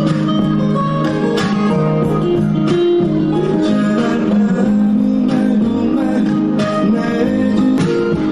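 Live band playing a pop ballad, with guitar to the fore.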